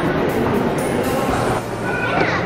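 Chain-and-pulley hoist clattering steadily as it lifts a heavy hanging rock.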